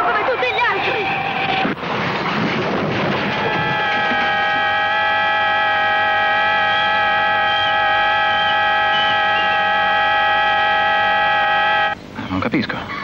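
Car tyres squealing in a skid, then a car horn sounding in one long unbroken blast from about three seconds in, cut off suddenly at the end.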